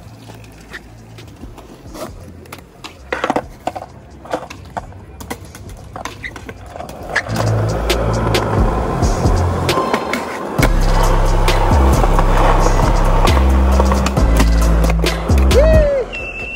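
Skateboard wheels rolling on pavement, with sharp clicks of the board's tail pops and landings. The rolling becomes loud about seven seconds in and louder again near the end. Background music with a deep bass line plays underneath.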